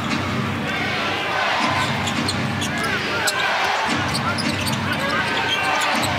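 Basketball game in an arena: steady crowd noise, with sneakers squeaking on the hardwood court and the ball bouncing during play.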